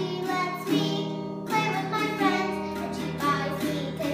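A young girl singing a song while strumming a toy acoustic guitar.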